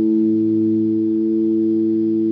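Amplified electric guitar and bass holding one sustained chord that rings steadily, with no drum hits.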